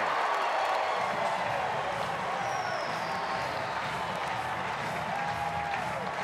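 Baseball stadium crowd cheering and applauding steadily after a home run, with music in the background.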